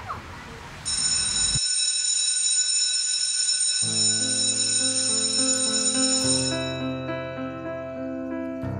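A high, steady electronic ringing tone that fades out about six and a half seconds in. Soundtrack music with sustained keyboard chords starts about four seconds in.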